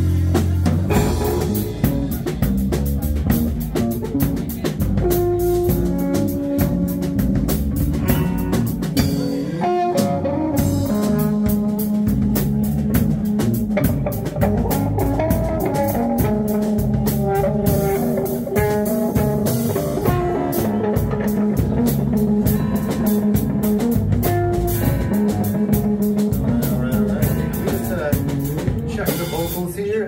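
Live rock band jamming: electric guitar, acoustic guitar, electric bass and drum kit playing together at full volume.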